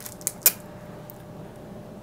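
Hands handling a paper envelope and a plastic card holder: two or three brief crinkles and clicks about half a second in, then quiet handling.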